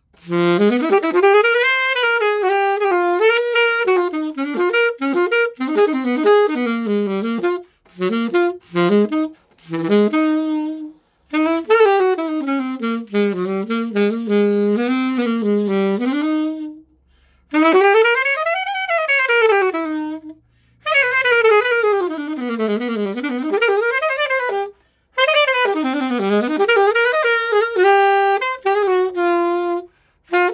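Glory alto saxophone played through a Cannonball stock mouthpiece: phrases of quick runs, some sweeping up and then back down, broken by several brief pauses.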